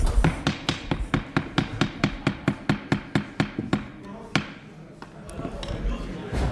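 Wooden gavel rapped rapidly on the dais, about five quick knocks a second for nearly four seconds, then one final separate strike, calling the committee hearing to order.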